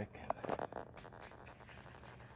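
A few light clicks and knocks in the first second, then faint handling noise, as a hand picks the pH tester pen up out of its plastic carrying case.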